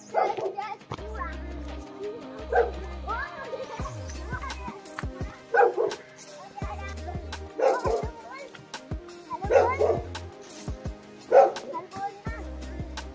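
Background music with a steady bass line, over a dog barking about six times, roughly two seconds apart.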